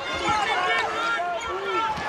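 Speech: a TV basketball commentator talking over the game broadcast.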